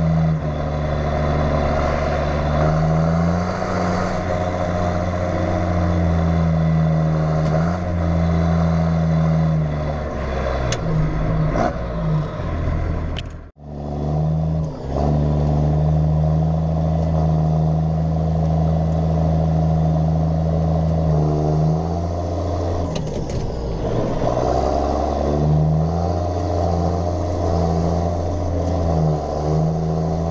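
John Deere 7810 tractor's six-cylinder diesel engine running, heard from inside the cab, its pitch stepping up and down several times as engine speed changes. The sound drops out briefly about halfway through.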